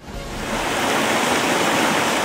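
Rushing water of a small stream cascading over rocks, a steady noise that fades in over the first half second.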